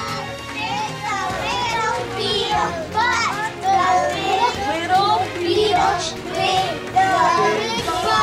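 A group of children talking and calling out over one another, with music playing underneath.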